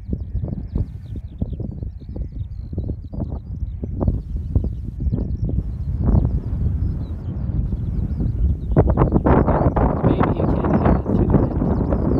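Wind buffeting the microphone on an open hillside, gusting louder about nine seconds in, with distant sheep bleating and faint high bird chirps.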